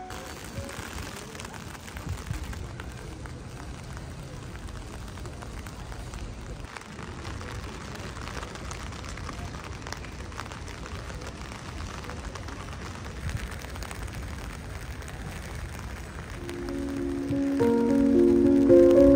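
Steady patter of rain over a low outdoor rumble. Piano music comes in near the end.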